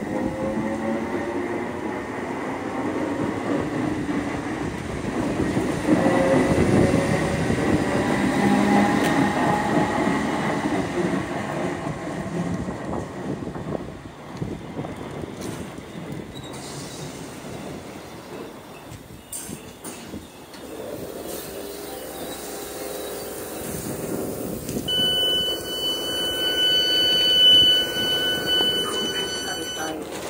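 A passenger train moving along the platform, its wheels squealing with shifting, gliding pitches over a rumble as it slows, then going quieter about halfway through. Near the end a steady, high-pitched electronic tone sounds for several seconds.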